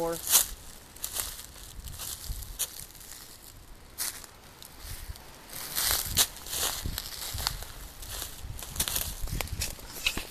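Footsteps crunching through dry leaf litter and twigs on a forest floor: irregular crackles and rustles, with a cluster of louder crunches about six seconds in.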